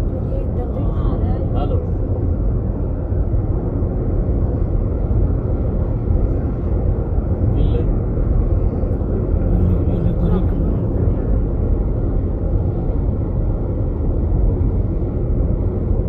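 Steady low road and engine rumble heard from inside a moving vehicle.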